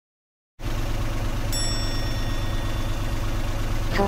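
Car engine running steadily with a low hum, cutting in abruptly after silence about half a second in. A single bright chime rings about a second and a half in and fades out.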